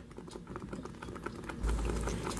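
Blended guajillo chile sauce cooking in a pot with a little oil, a fast patter of small crackles and pops as it heats. A low rumble comes in near the end.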